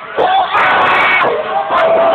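Audience breaking into loud shouting and cheering a moment in, with drawn-out high-pitched yells over the roar of the crowd.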